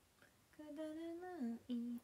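A woman humming a drawn-out "mm", held on one pitch for about a second, then dropping, with a short lower hum near the end.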